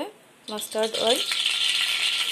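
Cooking oil sizzling and crackling in a hot kadai, setting in a little over a second in and carrying on steadily, just after the oil is poured in.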